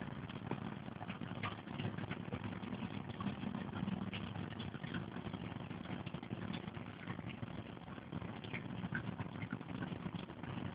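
Low, muffled background noise with faint scattered clicks and no clear voices.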